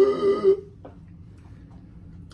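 A man's drawn-out, strained vocal sound, a high wavering groan of about a second at the start, then only quiet room sound.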